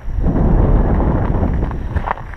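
Strong wind buffeting the microphone: a loud, deep, steady rumble that starts suddenly and lasts about two seconds.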